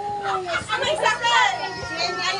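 A group of adults laughing and calling out excitedly over one another, several voices at once with some long high-pitched shrieks of laughter.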